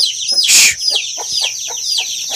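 Chicks peeping fast and shrill, a run of short downward-sliding peeps: the distress calls of a chick pinned under a ram's hoof. A louder harsh burst about half a second in.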